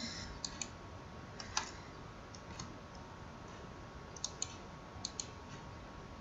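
A few faint computer mouse clicks, mostly in close pairs, over a low steady hiss.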